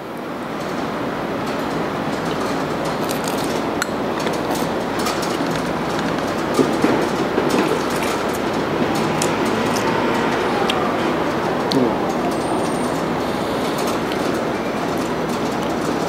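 A steady rumbling noise that builds up over the first couple of seconds and then holds evenly, with faint squealing glides about halfway through.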